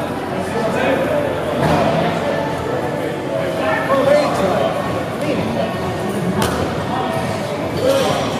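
Two grapplers struggling on foam mats: dull thuds and scuffs of bodies and canvas gi against the mat, with a sharper knock about six and a half seconds in, under indistinct voices.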